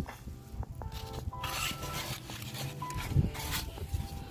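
Handling noise as a cardboard egg crate and the phone are moved about: rustling and a knock about three seconds in. Faint ringing notes at a few steady pitches sound in the background.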